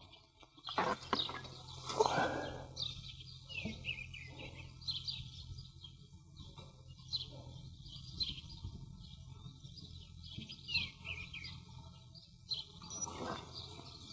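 Small birds chirping over and over, short falling chirps one or two a second, with a few soft knocks and rustles in the first seconds and again later. A steady low hum runs underneath.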